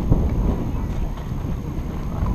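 Wind buffeting an outdoor microphone: an uneven low rumble.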